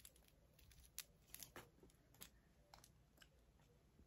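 Near silence with a few faint, scattered clicks as a white USB charging cable and a small handheld light are handled.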